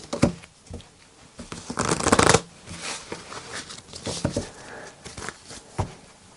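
A deck of tarot cards being shuffled by hand: irregular rustling and slapping of cards, loudest about two seconds in.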